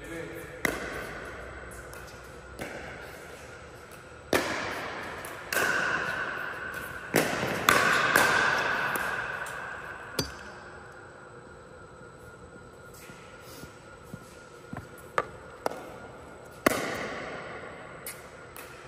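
Scattered sharp pops of a plastic pickleball off paddles and the court, about nine in all at irregular intervals, each ringing out with a long echo in a large indoor hall. Voices can be heard in the middle of the stretch.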